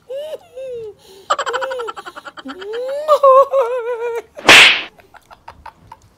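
A woman laughing and wailing in a high, wavering voice, with a fast run of ha-ha laughter about a second in. About four and a half seconds in comes a short, loud, hissing burst of breath, the loudest sound here.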